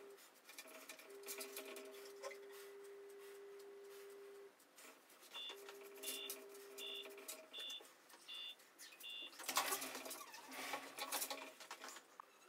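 Six short electronic beeps, evenly spaced about three-quarters of a second apart, in the middle, over a faint steady hum that cuts in and out. Near the end there is a louder burst of rustling.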